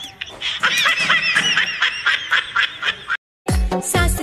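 Background music with a repeated high-pitched comic sound effect, short rising-and-falling calls at about four a second. It cuts off abruptly about three seconds in, and after a brief silence dance music with a heavy bass beat starts.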